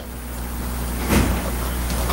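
Steady low electrical hum with even hiss from an old courtroom microphone and video recording, and a brief soft sound about a second in.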